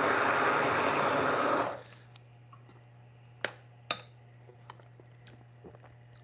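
Handheld immersion blender running in a glass measuring cup of green tahini sauce, cutting off a little under two seconds in. A few faint clicks follow.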